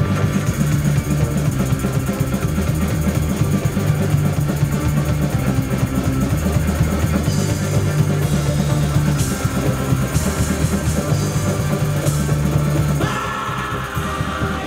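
A live band playing loud rock music on drum kit, electric and acoustic guitars and accordion, with a tambourine. The music eases off a little about a second before the end.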